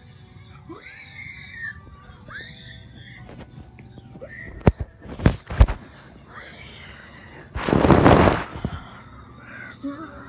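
Handling noise on the recording phone: a few sharp knocks about five seconds in, then a loud rustling burst of about a second near the eight-second mark. Faint squeaky sliding vocal sounds come in the first half.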